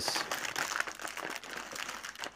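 Thin printed wrapper of a modeling-clay brick crinkling as hands pull it open, a dense, continuous crackle.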